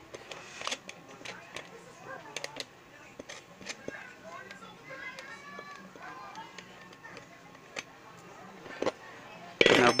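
Scattered light clicks and taps of hands handling a plastic motorcycle seat pan and its metal bolts, washers and brackets.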